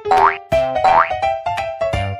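Upbeat comic background music with two quick rising cartoon boing sound effects in its first second.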